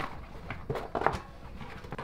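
Continental Race King bicycle tyre being worked onto its rim by hand: rubber rubbing and a few light knocks around the middle.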